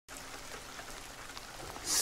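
Steady rain ambience, a soft even patter. A brief hiss swells just before the end.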